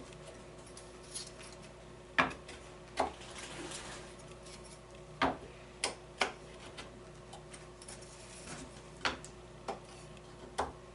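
Pine bee-frame parts knocking and clicking against each other and the bench as side bars are handled and fitted onto top bars: about seven sharp, uneven wooden taps over a faint steady hum.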